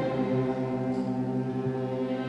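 String orchestra of violins, violas, cellos and double basses holding a steady sustained chord, with the low strings strongest.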